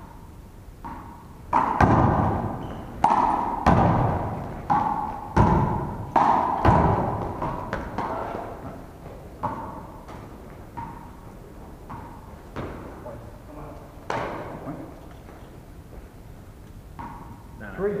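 Handball being struck by hand and rebounding off the wall and floor in a one-wall handball rally, each hit a sharp smack that rings on in the large hall. A quick run of loud hits comes a couple of seconds in, followed by fewer, quieter ones.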